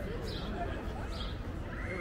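Footsteps on a stone-paved walkway at a steady walking pace, about three steps, over outdoor city ambience with faint voices.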